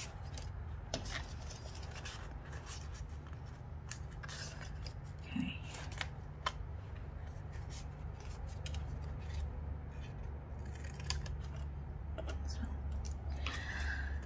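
Scissors cutting a sheet of embossed cardboard: a run of irregular snips, over a steady low hum.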